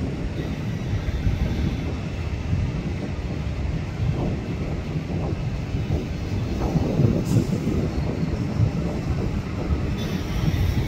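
Low, steady rumble of a distant Boeing 737 jet airliner on final approach, its level wavering slightly.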